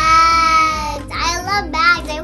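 A young girl singing out a long held high note, then a few quick warbling notes.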